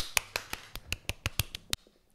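A person clapping hands quickly and repeatedly, about six sharp claps a second, stopping shortly before the end.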